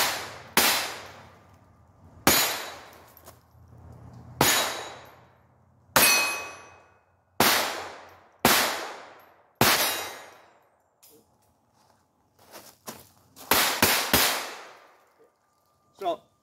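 Ruger SR22 .22 LR pistol firing about a dozen shots at steel plate targets, each sharp crack followed by a long ringing of the struck steel. The shots come singly, one to two seconds apart, then three in quick succession near the end.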